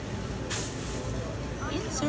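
Busy store background: a steady murmur with distant voices, and a short burst of hiss about half a second in.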